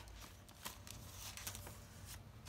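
Faint rustling and a few soft taps as the paper and packaging pages of a thick handmade junk journal are turned by hand.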